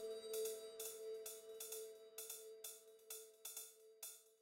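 Techno played live on a Roland TR-8S drum machine and a synthesizer: a steady pattern of hi-hat ticks several times a second over a held synth tone, with no kick drum. The held tone thins out near the end.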